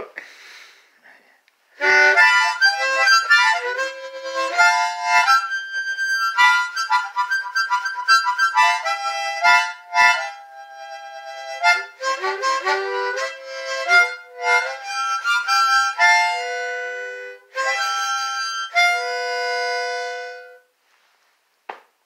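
Harmonica played solo, cupped in both hands: a tune of chords and single notes starting about two seconds in and ending on a few long held notes shortly before the end.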